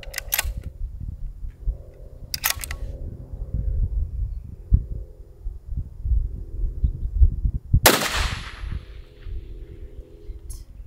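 A single shot from a muzzle-braked bolt-action rifle about eight seconds in: a sharp blast with a long echoing tail. Two short rattling clicks come earlier, near the start and about two and a half seconds in, over a low rumble that runs throughout.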